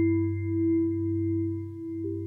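Teenage Engineering OP-Z playing slow generative ambient music: soft held synth notes over a low steady drone, with faint high sustained tones above, swelling and easing gently.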